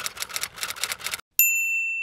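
Typewriter sound effect: a quick run of key clacks, then a single bell ding that rings for under a second.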